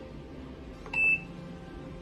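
American Home 6 kg automatic washing machine's control panel giving a single short, high beep about a second in as it is switched on, just after a faint click of the power button.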